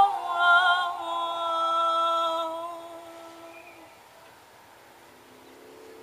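A woman singing a long held closing note that fades away about four seconds in.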